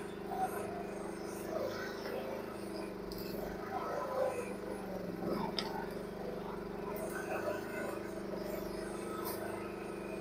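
Mini excavator's engine running at a steady drone while the bucket drags brush and small trees through the undergrowth. Branches crackle, with a few sharp snaps.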